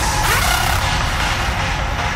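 Noisy intro of a raw hardstyle track: a loud, dense wash of distorted noise over a continuous low rumble, its top end dulling about a second in.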